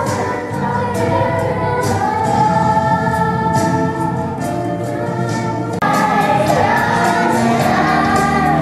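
A stage cast of young voices singing together in a musical number with accompaniment. About six seconds in, the sound jumps abruptly louder.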